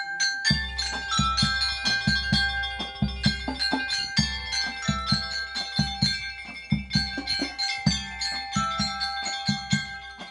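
Mallet keyboard instruments, xylophone or glockenspiel type, playing a melody of struck, ringing notes over a steady low drum beat, as a student band plays.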